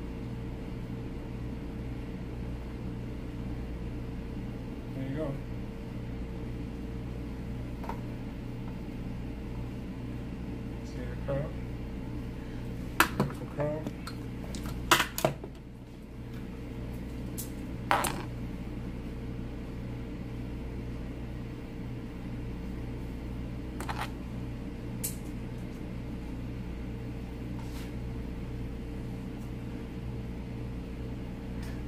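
A steady low hum with a few sharp clicks and taps near the middle, from handling a heated hair-styling iron and duck-bill hair clips.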